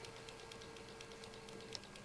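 Quiet lecture-hall room tone: a faint steady hum that stops near the end, with scattered soft clicks over tape hiss.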